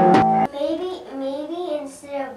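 A Tibetan singing bowl rings with a steady tone over struck overtones and cuts off abruptly about half a second in. A quieter voice then sings wavering, gliding notes.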